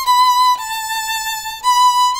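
Solo violin bowing long, sustained high notes in third position: one note, a step lower about half a second in, then back up to the first note.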